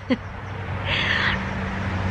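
Street noise: a vehicle's engine hum, steady and low, growing louder. A short hiss comes about halfway through.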